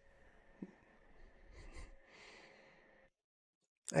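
Faint breathy exhales through the nose, a stifled laugh, about one and a half to two and a half seconds in, over quiet room tone.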